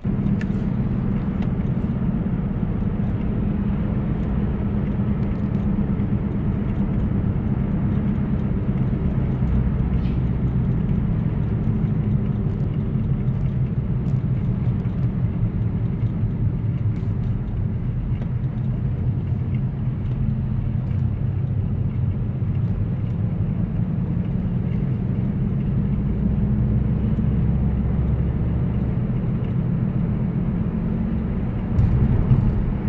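Steady road noise inside a moving car's cabin: a low rumble of tyres and engine while driving at a constant pace.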